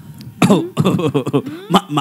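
A person coughing hard, several times in quick succession, mixed with bits of voice.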